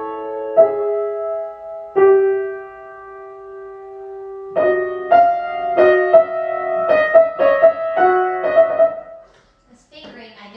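Grand piano playing: a chord, then another chord struck about two seconds in and left to ring for a couple of seconds, then a phrase of notes and chords several a second that stops about nine seconds in.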